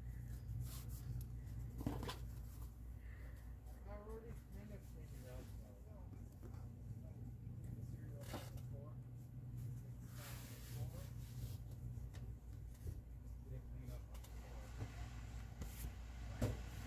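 Soft handling noises of thick chenille upholstery fabric being smoothed and folded over on a cutting mat, with a few light knocks, over a steady low hum.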